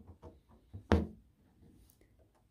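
One short knock about a second in, among a few faint taps: hands handling a wooden embroidery hoop and its fabric while stitching.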